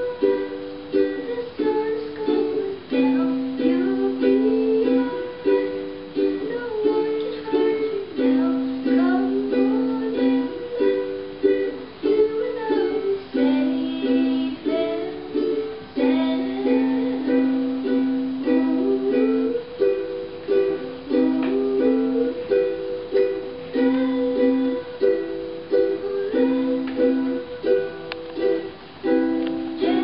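A ukulele played continuously in a small room, a repeating melody over chords.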